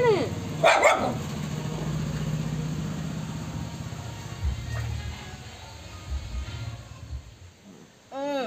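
A puppy gives one short whimpering cry that rises and falls at the very start, followed about half a second later by a short harsh yelp. After that there is only a low steady hum and a few soft thuds.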